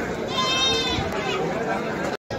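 A goat bleats once, a single high call of just under a second, over the chatter of a crowd.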